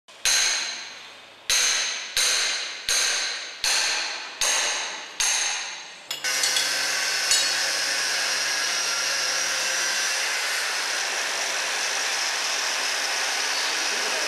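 A hammer striking metal seven times at a steady pace, each blow ringing and dying away, followed from about six seconds in by a steady hiss with a faint low hum under its first few seconds.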